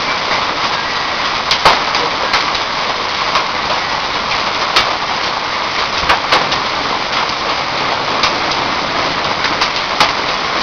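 Heavy rain with hail: a steady dense hiss of downpour, broken about once a second by sharp popping clicks of hailstones striking hard surfaces.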